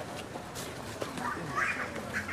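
Indistinct chatter of a crowd of people standing around outdoors, with a brief high-pitched wavering sound near the end.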